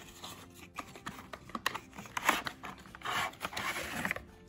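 A cardboard model-train box being opened by hand and its plastic tray slid out: a run of irregular scraping, rubbing and crinkling of cardboard and plastic.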